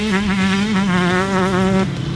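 2020 KTM 125SX single-cylinder two-stroke engine running at high revs with the throttle held open, a steady buzzing note with small dips in pitch, cutting off sharply near the end.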